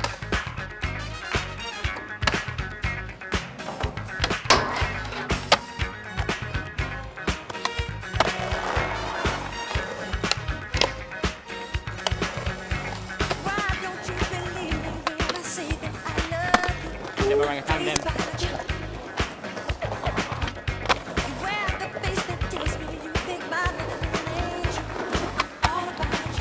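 Skateboards rolling and clacking on concrete, with repeated sharp knocks, over music with a beat.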